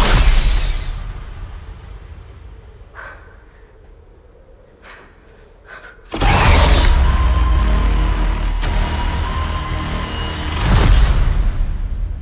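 Cinematic trailer sound design and score. A heavy boom dies away into a quiet, tense stretch broken by a few short sharp hits. About six seconds in, a sudden massive hit opens a loud, sustained deep rumble with a held high tone, which swells once more near the end.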